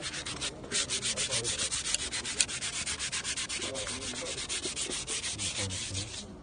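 Rapid, even back-and-forth rubbing as a cloth is worked by hand over the surface of the Black Stone inside its silver frame. It starts in earnest just under a second in and runs without a break, with two small clicks around the two-second mark.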